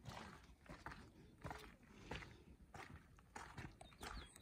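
Faint footsteps on a stony gravel trail, one or two steps a second.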